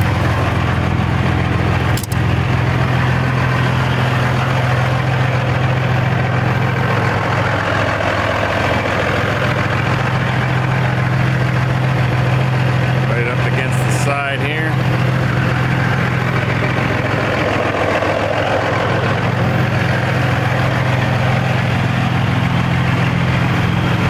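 Semi truck's diesel engine idling steadily, with a single sharp click about two seconds in.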